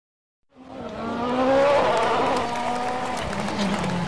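Rally car engine revving hard, its pitch gliding up and down, fading in about half a second in after a moment of silence.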